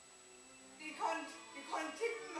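Two short dog-like barks about three-quarters of a second apart, the first about a second in.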